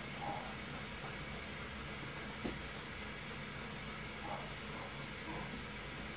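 Curved grooming shears giving a few faint snips as the hair on a dog's back foot is trimmed, over a steady low room hum.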